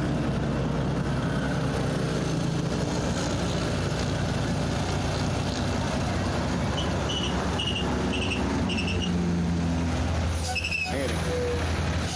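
Heavy trucks passing on a highway: a steady low diesel engine rumble with tyre noise. About seven seconds in, a run of five short high beeps sounds.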